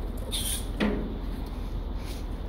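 A boot stepping on the wooden floor of a storage container: a short high scrape about half a second in, then a single clunk a little under a second in, over a steady low rumble.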